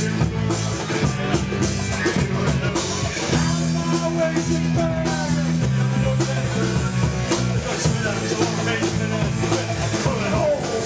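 Live rock band playing amplified electric guitars over a drum kit.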